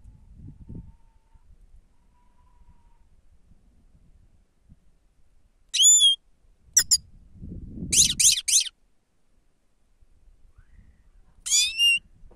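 Grey-headed goldfinch calling: short, sharp, high calls, one at a time about halfway through, then three in quick succession, and one more near the end. A low rustle sounds under the group of three.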